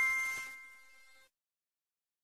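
The ringing tail of a bell-like chime in a logo intro jingle: several steady tones fading away, then cutting off about a second in.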